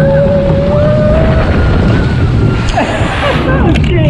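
Riding a log flume, heard from on board: a loud, steady rumble of rushing water fills the recording. A rider gives one long held shout, rising slightly, over the first second and a half, and brief voices follow.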